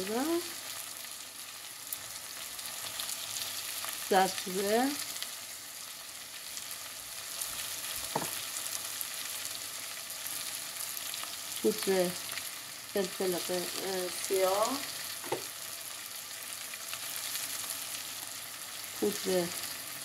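Diced onion, carrot and potato frying in butter in a pot, a steady sizzling hiss. A few brief voice-like sounds come through at times, and there is a single click about eight seconds in.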